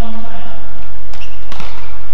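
Badminton racket strikes on a feather shuttlecock during a rally: sharp hits a little over a second in.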